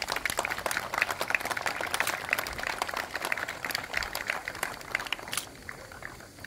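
Crowd applauding, a dense run of claps that dies away near the end.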